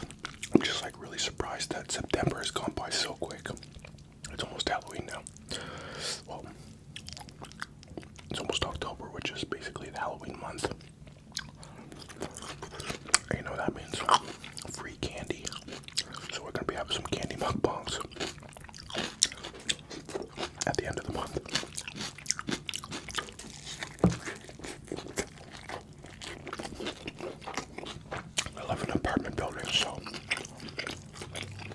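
Close-miked chewing and biting of a bacon cheeseburger: soft, wet mouth sounds and smacks with irregular clicks.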